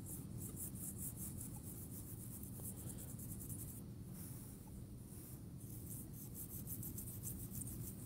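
Dirt being rubbed and brushed off a dug token coin by hand: quick, repeated soft scrubbing strokes, with a short pause about four seconds in.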